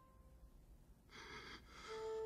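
Near silence, then about a second in two short, breathy gasps from an animated character, like catching breath while sobbing.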